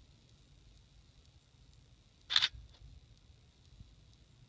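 A DSLR camera's shutter firing once, about two and a half seconds in: a sharp click with a fainter second click just after. It is the camera's timed interval shot, taken every 20 seconds.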